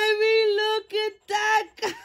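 A woman's high-pitched squeals of excitement over a winning ticket: one long held squeal, then several short ones about a second in.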